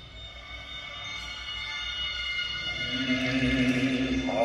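Sustained high electronic tones of live electronic concert music, swelling gradually, with a lower drone coming in about three seconds in.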